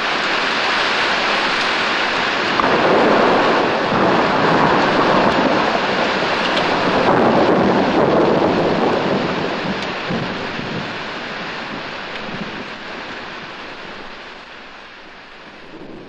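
Loud rushing noise without music, swelling about three seconds in and then fading away over the second half, like rain and thunder.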